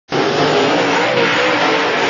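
Several dirt Late Model race cars' V8 engines running hard as the pack goes by, a dense, steady engine sound with pitch wavering up and down.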